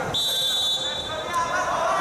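Referee's whistle blown once, a steady high blast about a second long, signalling the start of wrestling, over crowd voices in the hall.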